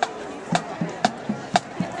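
Marching-band percussion keeping time with sharp clicks at a steady two a second, with softer low thuds between them, over faint crowd chatter.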